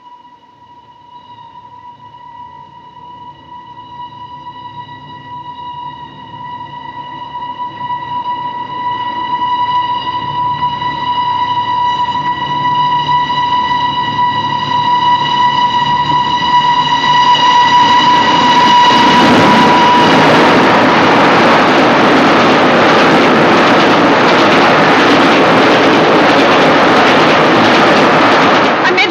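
Steam express train running through the station without stopping: its whistle sounds one long steady note that grows steadily louder as the train approaches, then about twenty seconds in the loud rush of the train passing close by takes over.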